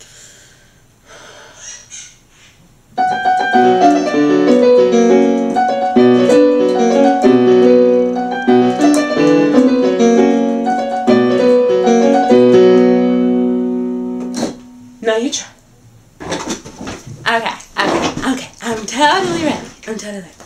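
Electronic keyboard played with both hands, several notes sounding at once in a short melodic passage with sustained notes. It starts suddenly about three seconds in and dies away at about fourteen seconds.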